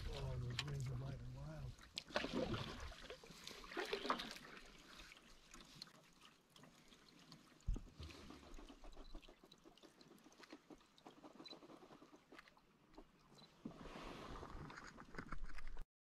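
Quiet canoe-on-the-water sounds: intermittent light paddle strokes and water splashes against a low background hush, with a brief wavering voice-like sound in the first two seconds. The sound cuts out abruptly just before the end.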